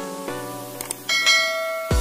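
Background music with a run of pitched notes; about a second in, a bright bell chime rings and holds, the notification-bell sound of a subscribe animation. Just before the end, a thudding electronic dance beat comes in.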